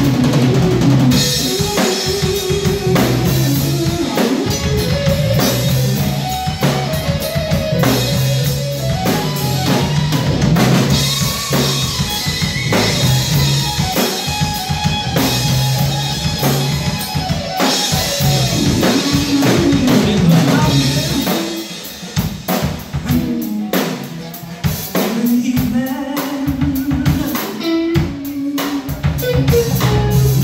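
A live instrumental funk jam by a trio of electric bass, drum kit and electric guitar, with busy drumming over a bass groove and guitar lines. About twenty seconds in the band drops to a quieter, sparser passage, then comes back up at full level near the end.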